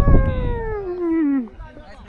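A person's long drawn-out call across the pitch, one held voice sliding steadily down in pitch for about a second and a half before it breaks off.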